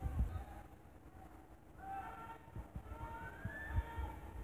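Faint, distant shouting and calling voices carrying across a large gymnasium, with a few low thumps.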